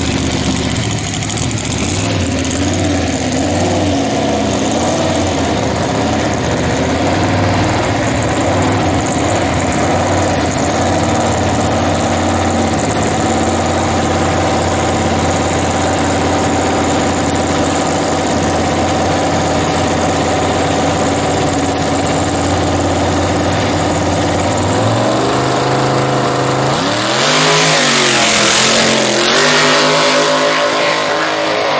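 Open-header V8 of a gasser-style drag car idling loudly with a slightly wavering pitch, then revving and launching hard near the end, its exhaust rising in pitch as it pulls away.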